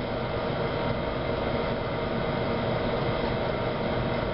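Steady mechanical hum and hiss of kitchen machinery, with a few faint steady tones running through it.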